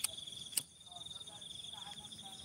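Crickets trilling steadily in a high, even tone, with two sharp clicks, one at the start and one about half a second in.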